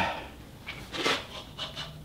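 Faint, scattered rubbing and light knocking from hands working a Bridgeport mill's handles and head, with a low, faint hum coming in about halfway through.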